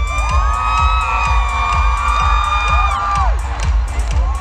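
Live pop concert music with a pounding bass beat, heard from within the audience, with many fans screaming and cheering over it until about three seconds in.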